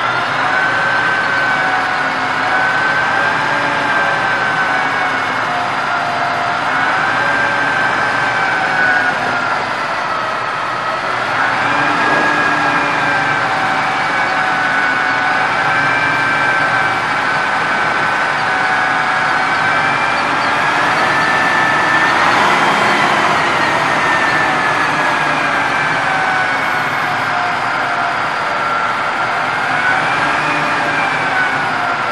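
Cummins NTC 300 diesel engine of a Kenworth C500 roll-off truck running at raised speed, driving the PTO hydraulic pump as the hoist lifts and tilts a loaded roll-off container. A steady whine over the engine drifts slowly up and down in pitch as the engine speed varies.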